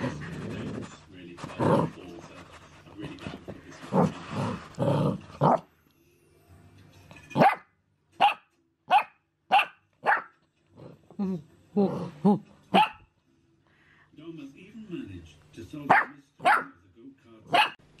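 Bearded collie puppy growling and barking in play. A run of sharp, separate barks comes about every half second to a second midway through, and more barks follow near the end.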